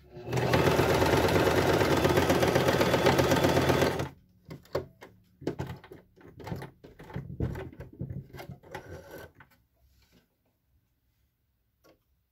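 Singer domestic electric sewing machine running fast and steadily, stitching fabric for about four seconds, then stopping abruptly. After it, a few seconds of scattered light clicks and fabric rustling as the work is handled and drawn out from under the presser foot.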